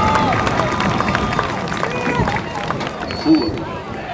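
Crowd cheering, shouting and clapping, tapering off over a few seconds.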